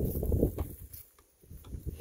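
Footsteps on dry fallen leaves: a short stretch of crunching steps, then a few light isolated clicks and a brief quiet gap.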